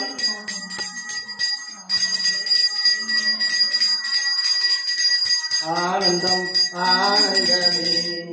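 A small brass hand bell (puja ghanta) is rung continuously during aarti, with fast, steady ringing that breaks briefly about two seconds in. Voices sing over it in the last few seconds.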